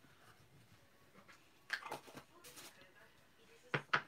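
Faint handling sounds of craft tools on a desk: a few small plastic taps and knocks about two seconds in and again near the end, as the embossing buddy is put back in its clear plastic tub.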